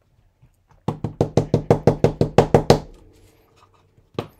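An ink pad tapped rapidly against a stamp block: a quick even run of about a dozen knocks, about seven a second, lasting about two seconds.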